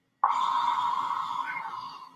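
A man's voice letting out one long drawn-out cry that starts suddenly and slowly fades.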